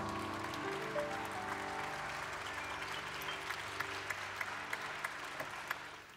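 Audience applauding to welcome a speaker, over soft background music of sustained chords; the clapping and music die away near the end.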